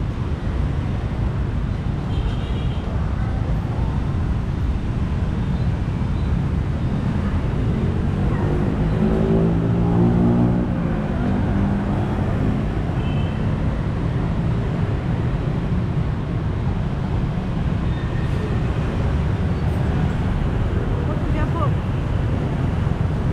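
Street traffic with a steady low rumble of motorbikes and cars. A vehicle passes close about halfway through, its engine note swelling and then falling away.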